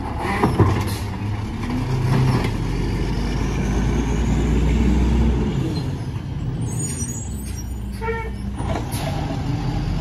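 Natural-gas Mack LE refuse truck with an Amrep Octo automated arm: a few knocks from the arm and cart at the start, then the engine builds up and its pitch rises as the truck pulls ahead. Near the end a brief high squeal and air-brake sounds come as it stops, and the engine settles back to a steadier run.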